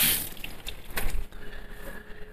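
Kitchen tap running water over hands, shut off just after the start, followed by a few faint clicks and knocks.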